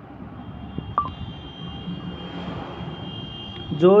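Low steady background hiss of a voice recording with a faint, steady high-pitched tone lasting about two seconds, and a man's voice starting just before the end.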